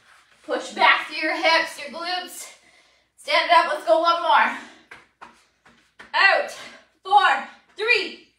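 A woman's voice speaking in short bursts of words, with brief gaps between phrases.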